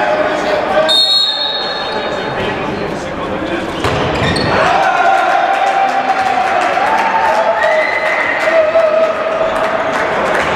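A handball bouncing on a sports hall floor during play, with repeated sharp knocks, amid voices in the echoing hall.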